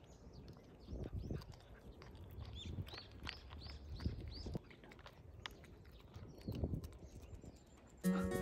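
A cat chewing dry kibble and treats from a plastic tray: irregular crunches and clicks. A quick series of high chirps comes in about a third of the way through.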